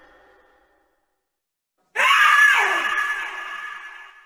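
A horror scream sound effect. After a fading tail and a second of silence, a sudden loud shriek starts about two seconds in, bends down in pitch and dies away with a long echo.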